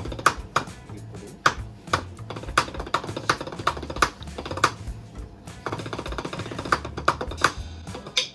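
Wooden drumsticks tapping on a rubber drum practice pad: sharp, uneven taps, a few loud strokes with softer ones between, over background music.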